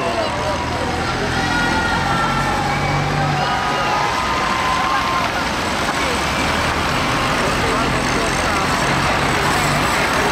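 Heavy truck engine running low and steady as the truck drives slowly past, with people's voices calling out over it.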